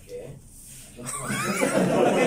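A group of people break out laughing about a second in, the laughter loud and building.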